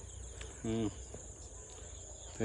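Insects chirring in an unbroken high-pitched drone over a low rumble. About two-thirds of a second in, a person makes a brief voiced 'hm'-like sound.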